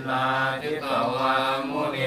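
A group of Thai Buddhist monks chanting a Pali blessing in unison on one steady low pitch.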